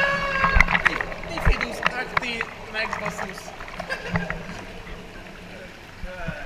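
Whirlpool bath water churning and splashing close to the camera over a steady low hum. The water gets quieter toward the end.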